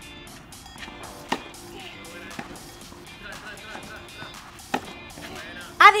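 Quiet background music with two sharp tennis ball strikes off a racket, the first about a second in and the second about three and a half seconds later.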